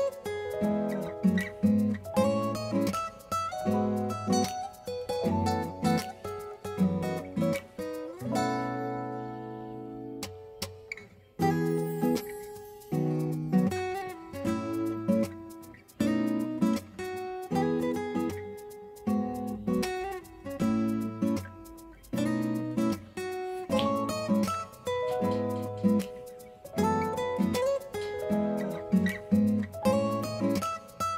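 Acoustic guitar background music: a run of picked notes, with one chord left ringing for a couple of seconds about nine seconds in.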